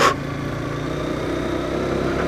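Motorcycle engine running steadily at low road speed.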